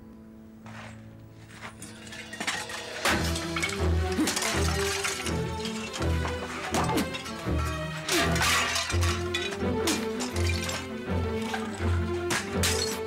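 Dramatic music score with a heavy pulsing beat, and from about three seconds in, repeated crashing and breaking impacts as a man smashes things in a rage.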